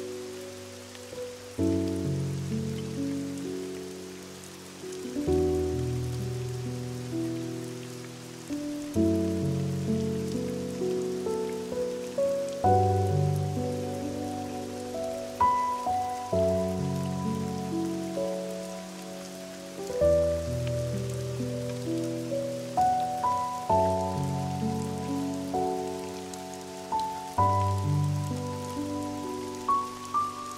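Slow, gentle piano music, soft chords and single notes that each ring and fade, playing over a steady hiss of rain.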